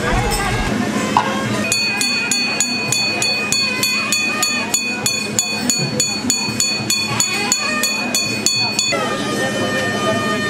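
Temple festival music: a nadaswaram holds a long, shrill note and drops to a lower note about nine seconds in. Under it run even, rapid percussion strokes, about three a second.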